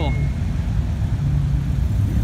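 Low, steady engine rumble from a line of cars rolling slowly past, led by a Volkswagen Beetle convertible with its air-cooled flat-four.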